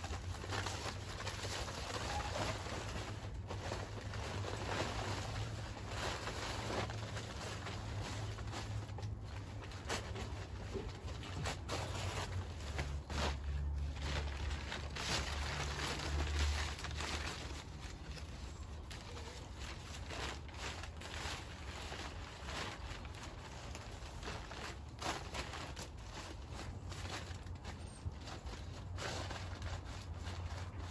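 Brown packing paper rustling and crinkling as it is handled, spread and tucked around a garden bed, with a low steady rumble underneath.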